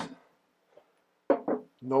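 A man speaking, with a pause of near silence of about a second between phrases.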